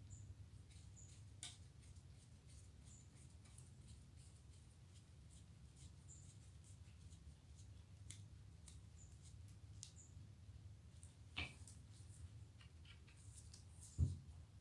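Near silence with a low steady hum, broken by faint small clicks and ticks of musket parts being handled and fitted during reassembly, with a sharper tick about a second and a half in and a single louder knock near the end.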